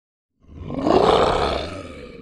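A big cat's roar, a sound effect. It starts about half a second in, swells quickly to its loudest, and trails off into a rattling growl near the end.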